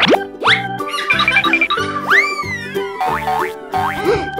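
Upbeat children's cartoon music with comic sound effects: several quick boing-like pitch glides sweeping up, one arcing up and back down about two seconds in, and a brief tinkling sparkle about a second in.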